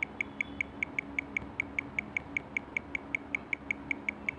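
A rapid, even series of short high-pitched ticks, about five a second, over a low steady hum.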